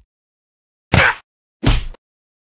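Two short, loud click sound effects about two-thirds of a second apart, from an animated subscribe-button end screen as the button and then its notification bell are clicked.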